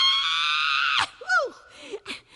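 A woman's voice holding one very high, shrill note for about a second, drifting slightly down before cutting off suddenly, followed by a few short, quieter gliding vocal sounds.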